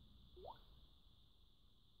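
Near silence: room tone, with one brief faint rising chirp about half a second in.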